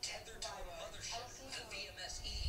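A person's voice in the background, words not made out, with a faint low hum beneath it.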